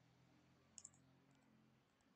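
Near silence with a faint low hum, broken a little under a second in by two quick, faint computer mouse-button clicks in close succession.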